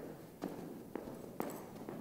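Running footsteps in long strides on a carpeted floor, about two short footfalls a second.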